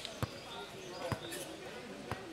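Futnet ball struck twice during a rally: two sharp thuds about a second apart, with voices of players and onlookers in the background.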